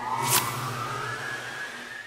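Channel logo sting sound effect: a rising, engine-like whine over a steady low hum, with a sharp whoosh about a third of a second in.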